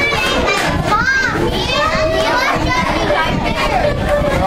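Several young children talking and calling out over one another in lively, overlapping chatter.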